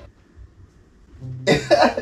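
A man coughs twice, short and sharp, about a second and a half in, after a quiet stretch of room tone.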